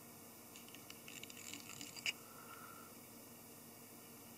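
Faint scratching and rustling of fly-tying thread being wrapped over a strand of peacock herl on a hook in the vise, ending in one sharp click about two seconds in.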